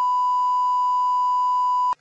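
A steady electronic test tone, one pure unchanging pitch, played over a station card to mark a lost broadcast link. It cuts off suddenly just before the end.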